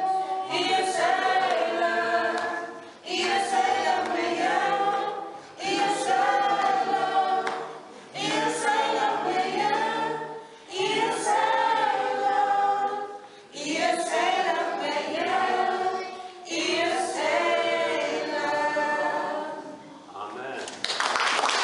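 A small mixed choir of men's and women's voices singing a cappella in harmony. The song moves in phrases of about two and a half seconds, with short breaks between them.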